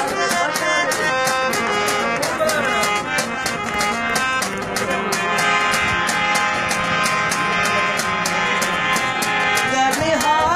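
Harmonium playing a melody in held, reedy tones over a steady, quick percussive beat, as accompaniment to a Saraiki folk song.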